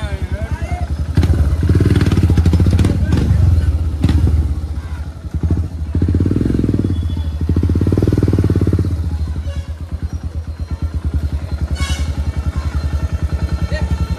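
Motorcycle engine running with a steady, even pulse. It grows louder twice for about three seconds each, about a second in and about six seconds in.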